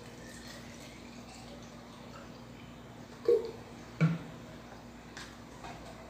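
Plastic squeeze bottle being refilled with cake syrup from a bottle: quiet handling, with a couple of short sounds about three and four seconds in, over a steady low hum.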